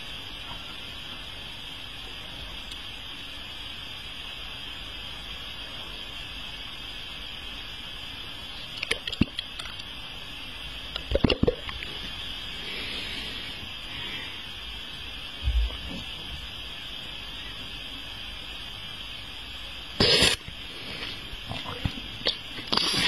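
Wet mouth sounds from a tongue and lips: a few short smacks and clicks around nine and eleven seconds in, over a steady background hiss, with a low bump near sixteen seconds and a louder breathy burst near the end.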